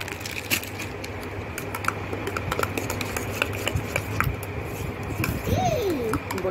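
Metal spoon stirring powder and liquid in a stainless steel tumbler: a string of small, irregular clinks and scrapes against the steel. A short voice sound comes near the end.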